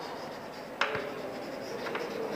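Chalk writing on a blackboard: a sharp tap a little under a second in as the chalk meets the board, then faint scratching strokes.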